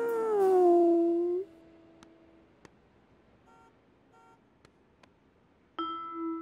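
Cartoon dachshund howling: one long note, carried in from just before, that slides down in pitch and stops about a second and a half in. Then it is near quiet with a few faint ticks, and music notes start just before the end.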